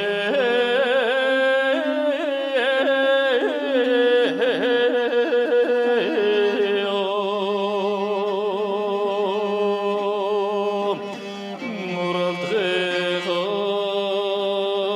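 Mongolian long song (urtyn duu) sung by a man: long held notes with heavy vibrato and ornamented turns, over a steady low accompaniment. The voice drops away briefly about eleven seconds in, then a new phrase begins.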